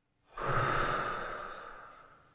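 Distributor logo sound effect: a breathy swell that sets in suddenly about a third of a second in and then fades away slowly.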